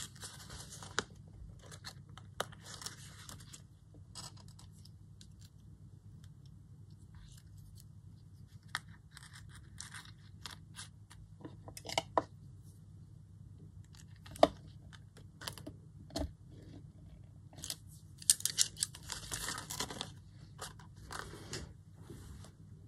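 Small handling noises from paper craft work: a card tag rustling and sliding on a cutting mat, with scattered sharp clicks of jewellery pliers as a metal charm is fitted onto the tag. The longest stretch of rustling comes near the end, and the sounds are faint over a steady low hum.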